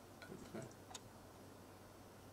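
Near silence with a low hum and a few faint, short clicks within the first second.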